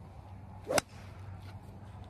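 A golf club swung through a full swing: a brief swish, then a single sharp click as the clubhead strikes the ball off the grass about three-quarters of a second in.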